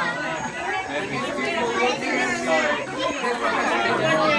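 Chatter of several onlookers talking at once, their voices overlapping with no single clear speaker.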